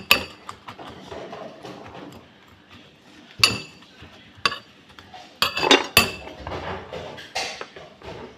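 A metal spoon knocking and clinking against a metal mixing bowl while cut vegetables are stirred, a handful of separate clinks with a short ring, the sharpest about three and a half seconds in and a cluster near six seconds.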